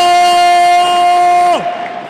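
A handball goalkeeper's long, loud shout of celebration after a save, held on one steady note and dropping off in pitch about one and a half seconds in, over crowd noise.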